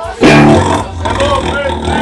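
A live band's amplified sound in a small club: a sudden, very loud burst of distorted electric guitar crashes in about a quarter second in, followed by shouting voices over the ringing guitar.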